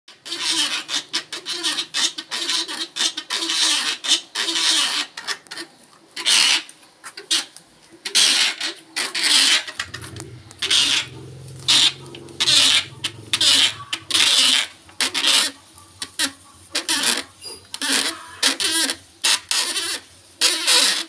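A hand-cranked wooden roller cotton gin squeaking and rasping with each turn of the crank as raw cotton is fed between its rollers, in a quick, uneven rhythm of loud strokes. A low hum sits underneath for a few seconds in the middle.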